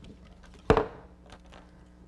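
One sharp crack a little under a second in, followed by a few faint clicks and rustles as round reed and a basket frame are handled.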